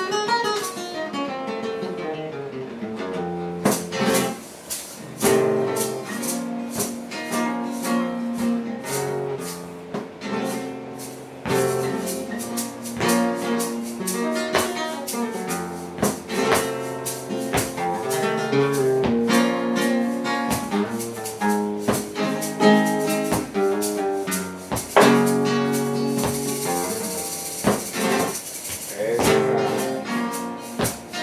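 Flamenco guitar playing the opening of a fandango de Alosno, with plucked runs falling in pitch and strummed chords.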